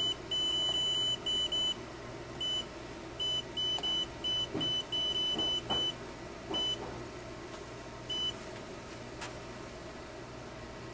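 WebTrax Plus touchscreen kiosk beeping as keys on its on-screen keyboard are tapped: a high-pitched beep for each touch, coming in irregular runs, some beeps longer or running together. They thin out after about seven seconds, with a last single beep a little after eight seconds as the form is submitted.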